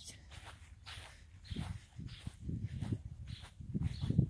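Footsteps walking across a grass lawn: soft, irregular steps that come more often in the second half.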